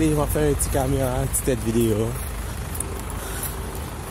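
A man's voice talking for about two seconds over a steady low hum of road traffic, then the traffic hum alone.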